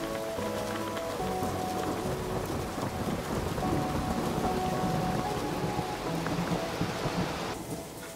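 Heavy rain falling steadily with a low rumble of thunder under it, over soft music; the rain cuts off shortly before the end.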